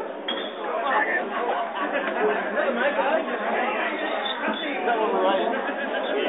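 Several people talking over one another, a steady babble of crowd chatter with no single voice standing out.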